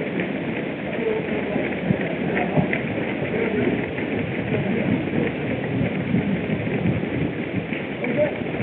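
A dense crowd of runners moving on foot along a paved street: a steady mass of footsteps, with a faint murmur of voices.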